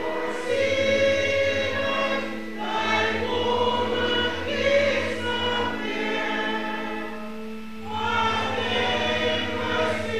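Church congregation singing a hymn together in held, phrased notes over a steady low accompanying tone, with a short break between phrases near the end.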